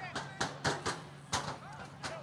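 Field sound from an American football play: a string of sharp knocks and claps, about six in two seconds, under faint shouting voices.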